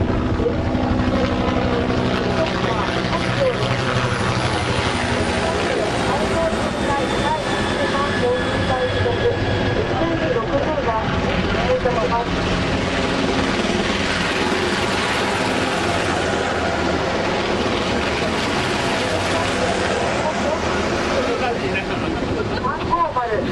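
Japan Coast Guard helicopter flying close past, a steady rotor and turbine noise with a faint high whine that rises and falls as it goes by. People talk over it.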